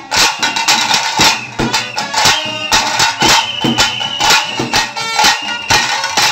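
Fast, loud drumming by a huli vesha troupe on tase drums, the sharp strokes packed close together, with a high held tone from about halfway to near the end.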